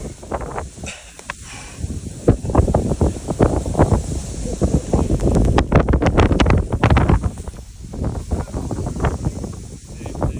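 Strong sandstorm wind gusting hard across a phone's microphone, a dense low buffeting that swells for several seconds in the middle and then eases.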